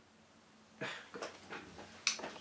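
Near silence, then a short breath intake about a second in, followed by a few faint mouth clicks.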